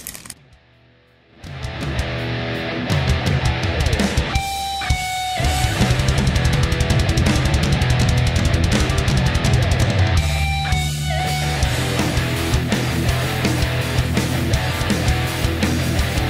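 Background rock music with electric guitar and a steady beat, starting about a second and a half in after a brief quiet moment.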